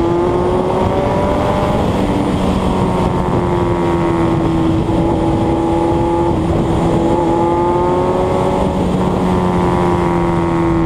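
Motorcycle engine running steadily at road speed, its pitch holding level with small shifts a few times, under steady wind rush over the on-bike microphone.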